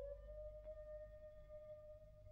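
Unaccompanied soprano voice holding one soft, high note that slides up a little at the start and then stays steady, in a contemporary vocal piece played from an old 78 rpm record with a low rumble underneath.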